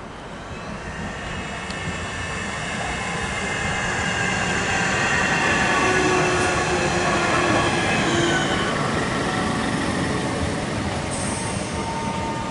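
Class 465 Networker electric multiple unit running in along the platform, growing louder as it passes, with a high whine of several steady tones over the rumble of wheels on rail. The tones drop slightly in pitch about two thirds of the way through as the train slows.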